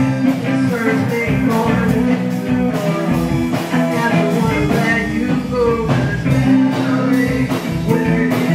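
A live rock band playing: a singer on a microphone over electric guitar and drums, with regular drum hits under sustained low notes.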